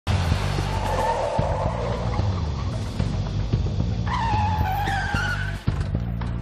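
A van's tyres squealing, first a rough screech about a second in, then a longer squeal about four seconds in that falls in pitch, over film music with a steady low beat.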